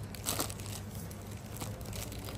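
Plastic packaging crinkling as it is handled, loudest in a short burst about a third of a second in, over a low steady hum.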